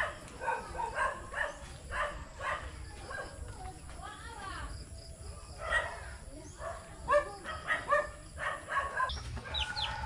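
Chickens clucking in a run of short calls, one every half second or so, over a low rumble.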